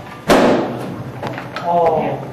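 A bat hitting a ball: one sharp, loud crack about a third of a second in, ringing off briefly in the hard-walled hallway.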